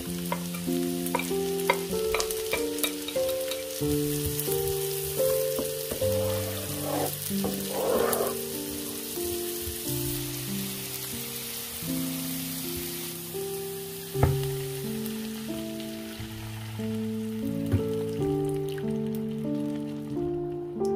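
Chopped shallots and garlic sizzling in butter and olive oil in a frying pan, with scattered sharp clicks and one louder knock about two-thirds in. The sizzle fades after the middle.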